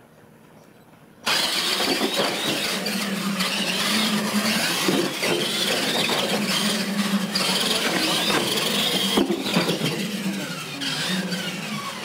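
Two electric radio-controlled monster trucks of the retro Tamiya Clodbuster class launch together about a second in and race across a tile floor. Their motors whine, rising and falling in pitch, over steady tyre noise.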